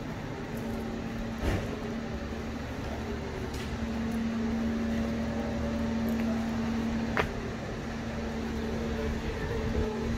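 A steady mechanical hum holding one constant low tone over a low rumble, with two short sharp clicks, one about a second and a half in and one about seven seconds in.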